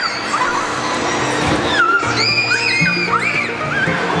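Children screaming and squealing on a swinging fairground ride, long high cries that rise and fall, over music with a steady low line.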